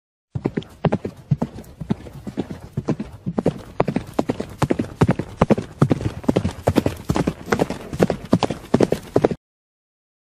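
Horse hooves clopping on hard ground, a quick uneven run of several strikes a second, which cuts off abruptly just before the end.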